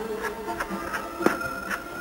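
A few light knocks of a plastic dough scraper on a floured board as gnocchi dough is cut, the clearest about halfway through, with a faint steady high whine starting about a second in.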